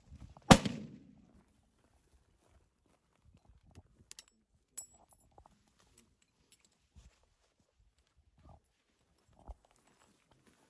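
A single hunting-rifle shot about half a second in, loud and sharp with a short trailing rumble, then a few faint metallic clicks and soft rustles.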